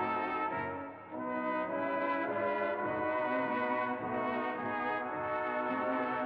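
Slowed-down 1930s dance band record with heavy added reverb, an instrumental passage of long, sustained brass chords. The loudness dips briefly about a second in, then the chords swell back.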